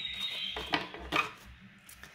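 Tarot cards being handled and gathered on a table: a soft rustle, then two short light clicks of the cards about a second in.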